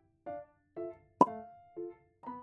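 Background music: a light melody of short plucked notes, about two a second. About a second in comes a single sharp click, the loudest sound.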